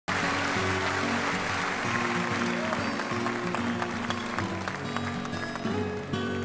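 Live audience applause over the instrumental opening of a song with low sustained notes; the applause dies away over the first few seconds while the music carries on.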